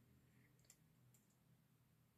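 Near silence: quiet room tone with a few faint, sharp clicks about a second in.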